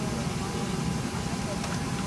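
Steady low hum in the cabin of a McDonnell Douglas MD-11 standing at the gate, from its air conditioning, with a faint steady high tone over it.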